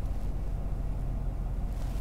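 Low, steady hum inside the cabin of a stationary Mercedes-Benz S580.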